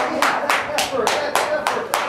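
Hands clapping in a quick steady rhythm, about four claps a second, urging on a dog pulling a weighted cart, with a voice calling faintly underneath.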